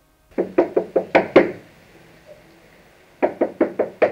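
Knocking on a door: a quick run of about six knocks, a pause of nearly two seconds, then a second run of knocks near the end.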